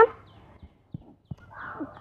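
A voice's last word cuts off at the start. Then it is mostly quiet, with two faint ticks near the middle and a short, breathy exhale shortly before the talk starts again.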